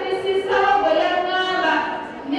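A woman singing a few long, held notes into a microphone, breaking briefly from her speech.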